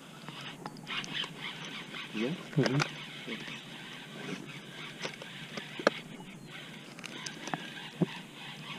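A brief burst of a man's voice, about two and a half seconds in, that is not clear words. Single sharp knocks follow near the end, over a steady faint hiss.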